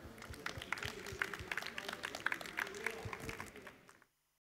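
Audience applauding: many separate hand claps, tailing off near the end.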